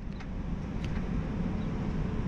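Steady outdoor parking-lot background noise: a low rumble of road traffic, slowly growing a little louder, with a couple of faint clicks.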